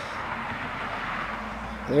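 Steady outdoor background noise: an even hiss with no distinct events, swelling slightly in the middle.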